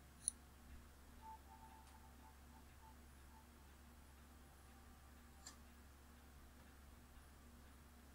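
Near silence: room tone with a steady low hum, broken by one sharp click just after the start and a fainter click about halfway through.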